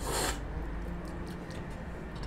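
A quick, forceful slurp of coffee from a cupping spoon, the way tasters aerate coffee at a cupping, lasting about a third of a second at the start. After it there is only a low, steady room hum.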